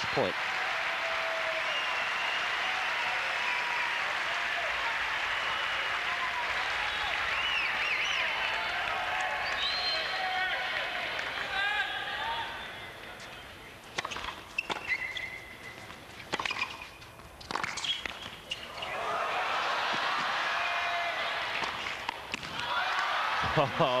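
Tennis stadium crowd noise, with shouts and whistled calls, dies down before a rally of sharp racket-on-ball strikes and bounces. The crowd then breaks into cheers and applause as match point is won on a net cord.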